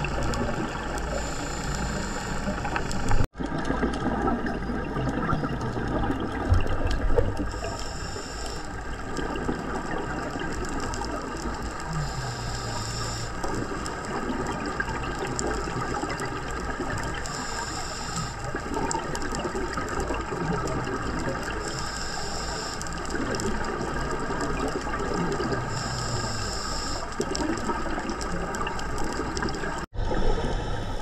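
Scuba diver breathing through a regulator, heard underwater: a steady underwater rush with a burst of exhaled bubbles about every four to five seconds. The sound drops out for an instant a little over three seconds in.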